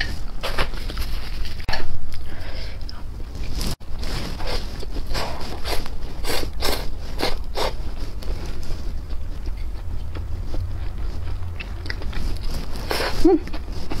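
Close-miked eating sounds: chewing stir-fried fire chicken (Buldak-style) noodles, a run of wet clicks and smacks, over a low steady hum.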